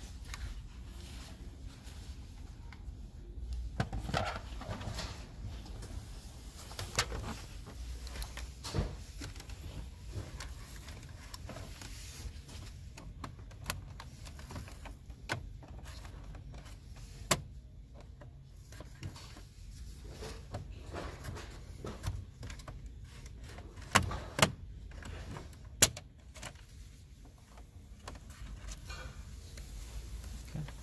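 Plastic dashboard trim on a Range Rover Sport being pried loose with a plastic trim tool: scattered light clicks and taps of plastic against plastic, with a few sharper snaps about three-quarters of the way in as the retaining clips let go. A low steady rumble sits underneath.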